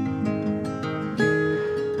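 Acoustic guitar strumming and letting chords ring as the introduction to a song, with a new chord strummed just over a second in.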